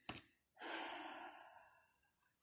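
A woman's soft, audible breath, about a second long, preceded by a short click near the start.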